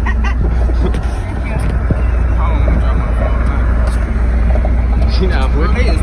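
Steady low rumble of a car on the move, heard from inside the cabin, with faint voices in the background.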